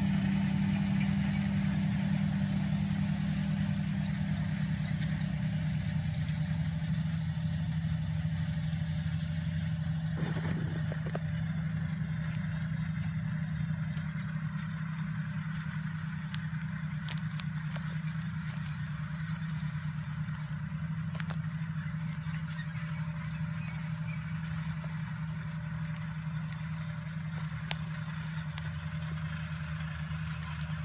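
John Deere tractor's diesel engine running steadily under load while planting cotton, a low hum that slowly fades as the tractor pulls away across the field.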